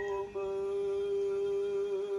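A single voice holding one long, steady sung note in a chant-like way. It breaks off briefly about a third of a second in, then carries on at the same pitch.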